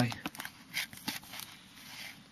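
Faint, scattered rustles and small clicks of clear plastic album sleeves being handled as cigarette cards are shown.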